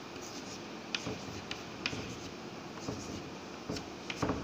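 Chalk writing on a blackboard: short scratchy strokes with a few sharp taps of the chalk as digits are written.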